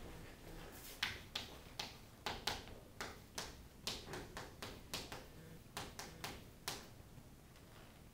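Chalk tapping on a chalkboard as a line of an equation is written: a quick, irregular run of sharp taps, two to three a second, starting about a second in and stopping shortly before the end.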